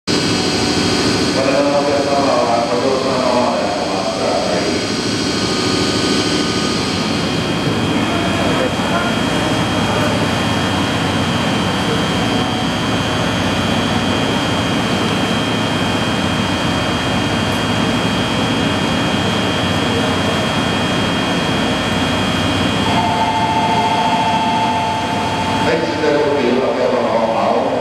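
Steady running noise of a JR EF64 electric locomotive standing at the platform, with voices around it. A high steady tone runs through the middle, and about three seconds before the end a steady two-note tone starts.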